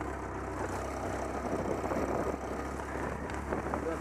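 Engine of a small open off-road vehicle running steadily while driving over a rough field, with a rushing noise of wind and ground over the microphone.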